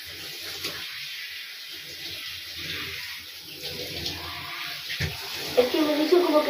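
Water running from a bathtub tap and splashing into the tub while hair is washed under it: a steady hiss of running water.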